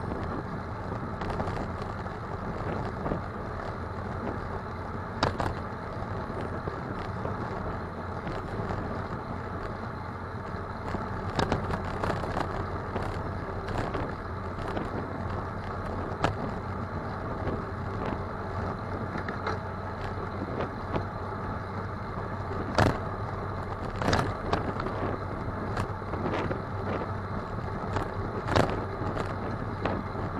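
Steady riding noise from a bicycle's front-mounted camera moving through city traffic: wind on the microphone and road rumble, with scattered sharp knocks and rattles from bumps in the road.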